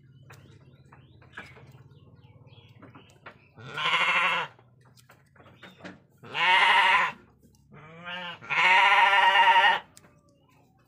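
A sheep bleating three times as it is held down, each call wavering and about a second long, the last the longest with a softer start. Faint clicks and rustling come between the calls.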